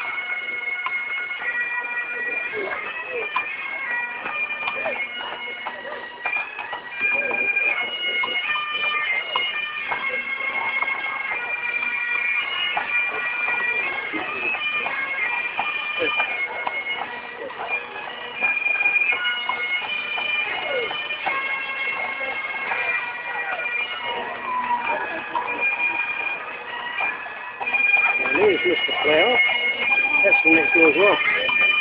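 Bagpipes playing a tune in held notes that step from one pitch to the next, with spectators' voices alongside, louder near the end.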